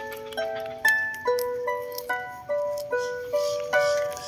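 Small wooden harp being plucked: a slow melody of single notes, about two a second, each ringing on and fading, with a fuller chord near the end.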